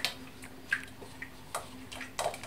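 Thick blended carrot soup pouring from a glass bowl into a steel saucepan, with a few light clicks and taps, the first right at the start and two more spaced well apart, over a faint steady hum.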